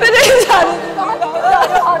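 Voices crying out in grief, their words broken by sobbing.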